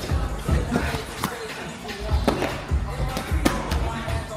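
Boxing gloves landing punches during sparring: irregular dull thuds and a few sharp smacks, with background music playing.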